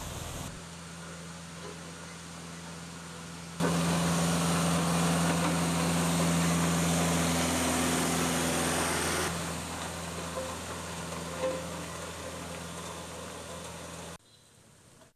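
Diesel engines of road-paving machinery running steadily, with a low hum. The audio comes in a few edited stretches, and the loudest runs from about four to nine seconds in.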